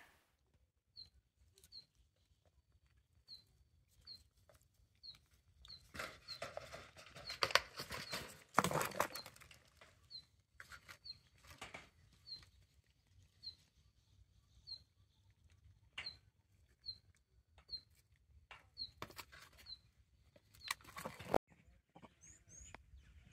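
Vervet monkeys handling and eating fruit pieces: scattered rustles and clicks, busiest about a quarter to halfway through. Over it a short high chirp repeats about once a second.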